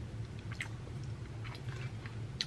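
A person chewing a mouthful of food, with a few soft wet mouth clicks, over a steady low hum.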